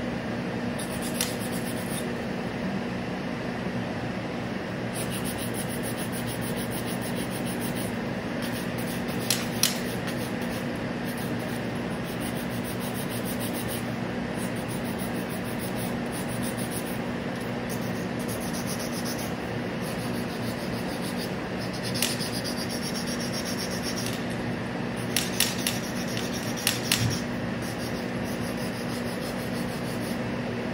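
A hand nail file rubbing back and forth across a long acrylic nail in short scratchy strokes, over a steady machine hum like a fan. A few sharp clicks or taps come in the middle and near the end.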